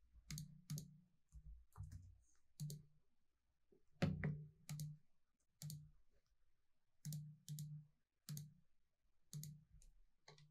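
Faint computer mouse clicks and keystrokes while drawing in CAD software: irregular single clicks, often in quick pairs, about one or two a second, the loudest about four seconds in.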